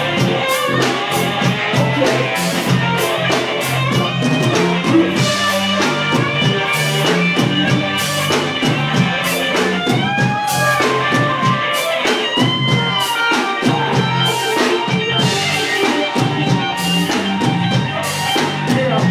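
Live rock band playing an instrumental jam: electric guitar, drum kit with steady cymbal strokes, and keyboard, with a few high notes bending up and back down in pitch.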